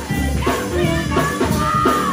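A man singing a gospel song over instrumental backing, with held bass notes under the voice.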